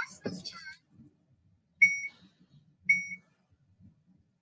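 Two short electronic beeps from a smart-card attendance reader, about a second apart, each one a card being tapped and accepted.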